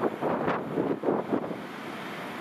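Wind buffeting the microphone in irregular gusts over the running of an approaching Class 60 diesel locomotive. The gusts die down near the end, leaving a steady rumble.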